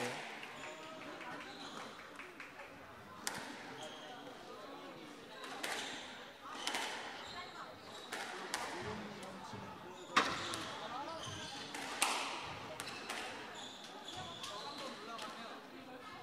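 Squash ball knocks: sharp, hard hits of rackets on the ball and the ball on the court walls, coming a second or more apart. The loudest come about ten and twelve seconds in, with faint voices in the background.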